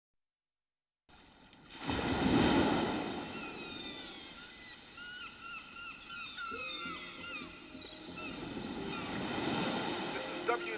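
Ocean surf washing in after a second of silence, swelling about two seconds in, with short chirping bird calls over it. A soft held musical tone comes in at about six and a half seconds.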